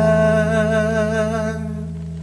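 A man's voice holding one long sung note with a slight vibrato, fading out about a second and a half in, over a strummed chord on a Takamine acoustic guitar left ringing.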